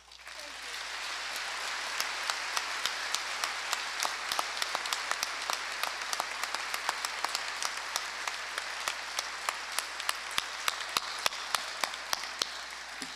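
A large audience applauding, the applause building within the first second and then holding steady, with individual sharp claps standing out.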